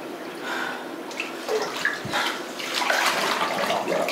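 Water in a bathtub sloshing and splashing as a person slides down under the surface, with small gurgles, busiest and loudest in the last second.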